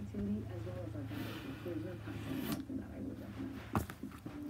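Faint, indistinct voices talking over a low steady hum, with a sharp click near the end.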